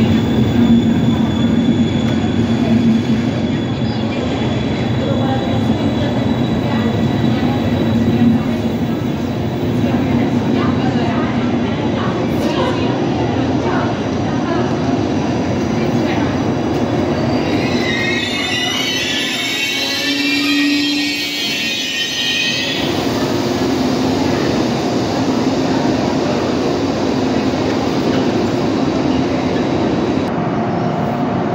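Intercity passenger coaches rolling slowly past on arrival, the train braking to a stop. A high-pitched squeal of wheels and brakes sounds for several seconds a little past the middle.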